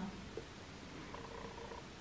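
Quiet room noise with a faint steady low hum, in a pause between spoken crochet instructions.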